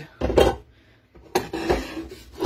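Cookware being handled: a glass pot lid and a pot knocking against a nonstick pan as they are moved and set down, two short clatters about a second apart.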